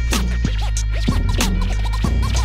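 Instrumental hip hop beat with a heavy bass line and drums, overlaid with DJ turntable scratching: short scratched sounds sliding up and down in pitch, several times over.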